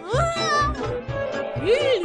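Background music with a steady beat, over which a high, cartoonish pitched call sounds twice, rising and holding at the start and rising and falling near the end.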